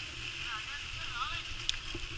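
Mountain bike riding along a dirt track, heard through an action camera: a steady rumble of tyres and wind on the camera, with a couple of light clicks.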